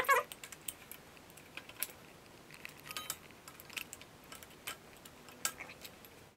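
Light, irregular metallic clicks and taps as worn brake pads are wiggled out of a quad's rear disc brake caliper by hand. The pads are worn down to their metal backing plates, and one clink about halfway through rings briefly.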